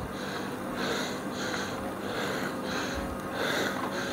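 A cyclist huffing, with quick heavy breaths about twice a second, out of breath from pedalling hard up a steep hill. Beneath it the e-bike's rear hub motor gives a faint steady whine.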